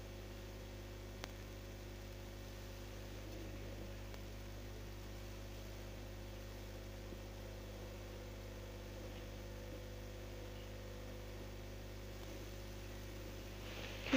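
Steady low background hum with hiss, several low tones held unchanged, and one faint click about a second in.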